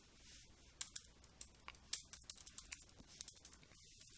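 Faint typing on a computer keyboard: a string of light, irregularly spaced keystrokes as a word is typed.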